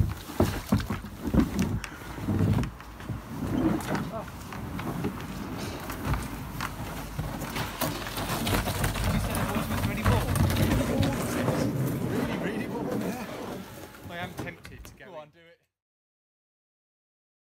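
Plastic sit-on-top kayak being dragged up a riverbank, its hull scraping and knocking over the ground and undergrowth in uneven bumps; the sound cuts off suddenly near the end.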